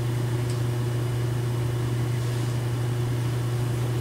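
Steady low hum with an even background hiss, unchanging throughout, and one faint click about half a second in.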